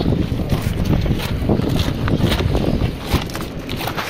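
Wind buffeting and handling noise on a handheld camera's microphone: a dense, loud rumble with many scuffs and rustles as the camera is moved about.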